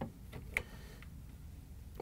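A few light plastic clicks, the sharpest about half a second in, as a refrigerator light switch is wiggled free of its release tab and pulled out of the plastic liner.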